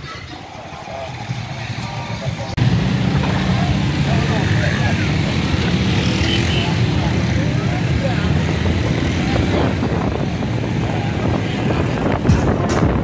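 A motorcycle taxi's engine running as it rides along the street, a steady low rumble. The sound jumps suddenly louder and closer about two and a half seconds in.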